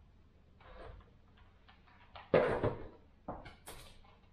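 Faint, intermittent rustling and crinkling of hands handling faux moss and artificial plants, with a few short crinkles near the end.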